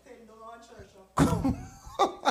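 A man's short burst of laughter about a second in, after a faint murmur of voice.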